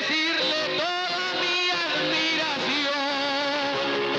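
Trova paisa music: a man singing an improvised verse over plucked guitar accompaniment, the voice dropping out after about two seconds while the guitars play on.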